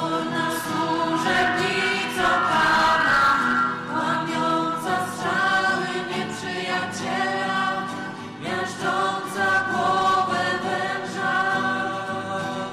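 A congregation singing a hymn together in slow, held notes.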